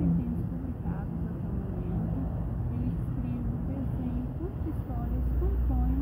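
Indistinct, faint voices over a steady low rumble.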